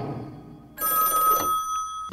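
A telephone ringing, starting about a second in with a steady high ring, just after the tail of the music fades away.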